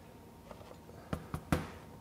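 A 60V lithium-ion battery pack being unlatched and slid off a cordless impact wrench: about a second in, three quick plastic clicks and knocks, the last one loudest.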